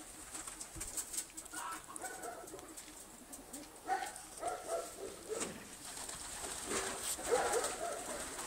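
Pigeons cooing in soft phrases that come about three times, roughly every few seconds.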